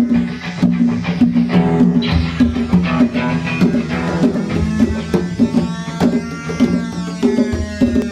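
Loose jam of a circuit-bent toy electronic drum set and hand-played congas, with many quick drum hits over a repeating two-note low pattern. An acoustic-electric guitar strums chords, more prominent in the second half.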